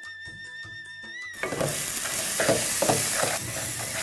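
Background music, then about a second and a half in a loud sizzle starts as a seasoning of onions, green chillies and curry leaves fries in oil in a metal pan, with a spatula stirring and scraping against the pan several times.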